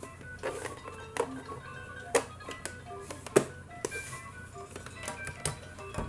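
Background music of short, chime-like melodic notes, with a few sharp knocks and clicks as the plastic cassette recorder is handled and turned over; the loudest knock comes a little past the middle.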